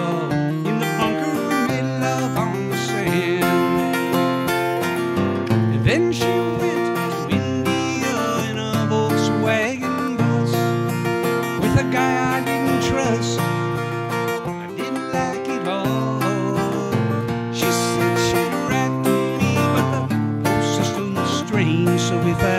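Acoustic guitars strumming and picking a folk-country song played live, with a man's voice singing in places.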